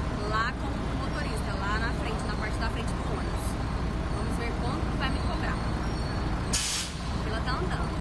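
City buses running at a terminal platform, a steady low rumble with people's voices around. About six and a half seconds in comes a short hiss of air from a bus's air brakes.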